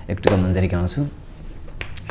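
A man speaks a few words, then there is a lull and a single sharp click near the end.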